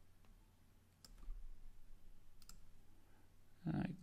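Faint computer mouse clicks as path points are placed: one click about a second in and a quick pair of clicks about two and a half seconds in.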